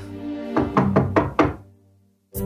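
Background music: a held low note under a quick run of five struck notes, fading out to silence near the end.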